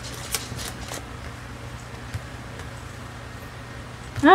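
A deck of oracle cards being shuffled by hand, card edges clicking in quick succession through the first second, then only an occasional soft tap as a card is drawn and laid down. A steady low hum runs underneath.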